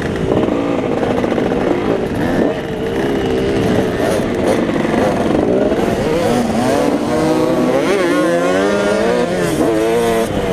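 Motocross bike engine heard from on board as it is ridden, revving up and falling back again and again as the rider works the throttle through the track's jumps and turns. It runs over a constant rushing noise.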